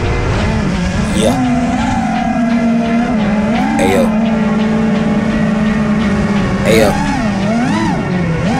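FPV freestyle quadcopter's brushless motors and propellers whining, heard from the camera on board: the pitch holds steady for stretches, then swoops up and down with quick throttle changes about a second in, around the middle, and again near the end.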